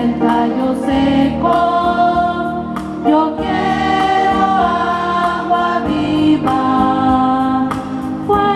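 A choir singing a hymn together, long held notes moving to a new chord every second or so.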